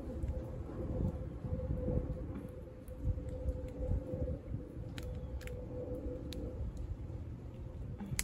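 Pruning shears being worked into a thick triangle cactus stem: low handling noise and a couple of faint clicks about five seconds in. Underneath runs a steady hum that fades out about six and a half seconds in.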